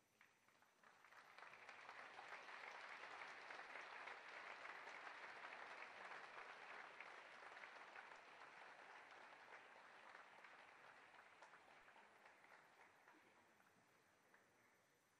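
Audience applause that swells over the first couple of seconds, holds, and then slowly dies away. It is fairly quiet throughout.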